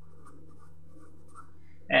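Red marker writing on paper in short, faint scratchy strokes over a steady low hum. A man's voice starts at the very end.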